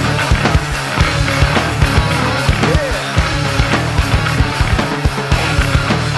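Heavy nu-metal band music with no vocals: distorted guitars and bass over busy, hard-hit drums.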